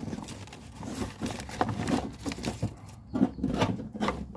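Irregular knocks, taps and rubbing from a phone camera being handled and repositioned, with louder clusters in the middle and near the end.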